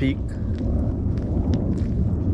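Wind buffeting an outdoor camera microphone: a steady low rumble.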